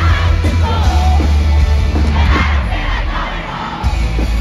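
Live rock band playing loudly through a concert PA with a crowd yelling and screaming along. About two-thirds of the way through, the bass and drums drop out, leaving mostly the crowd's screams, and the full band comes back in at the very end.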